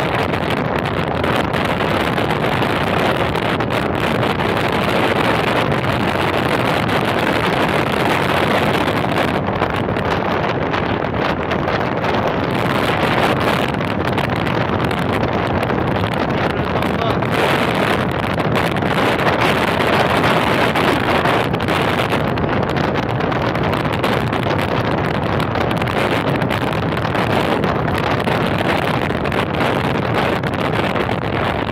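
Moped-class scooter riding at steady speed, its engine and CVT drive (fitted with a larger performance front variator and 8 g rollers) buried under loud, constant wind rushing over the handheld phone microphone.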